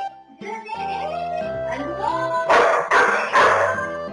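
Background music, with a golden retriever × flat-coated retriever puppy barking twice, loudly, in the last second and a half.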